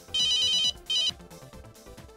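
Smartphone ringtone for an incoming call: a bright, warbling electronic trill lasting about half a second, then a shorter repeat just after. Soft background music runs underneath.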